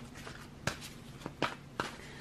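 A deck of tarot cards handled in the hands, with about four light clicks of cards knocking and slipping against one another.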